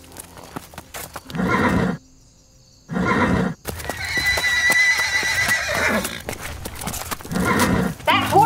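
A horse's hooves striking dirt, with several loud short bursts, then a long high-pitched neigh about four seconds in, lasting around two seconds, as the horse rears.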